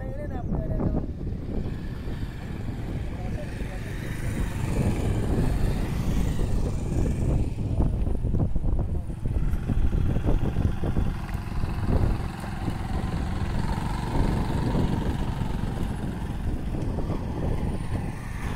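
Outdoor location sound of a motor vehicle engine running, with a heavy, uneven low rumble like wind on the microphone and people talking in the background.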